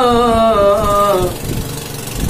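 A man's voice holding one long sung note of a devotional naat, sliding slightly down in pitch and ending a little past halfway. A low steady hum carries on underneath after the note stops.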